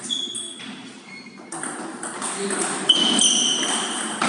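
Table tennis rally: the celluloid-type ball clicking off the table and the rubber bats, each hit a short, high ping that rings on briefly in the large hall, with the sharpest hit just before three seconds in.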